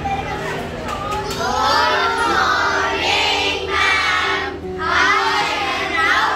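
A class of children's voices speaking together in chorus, over background music with steady held notes.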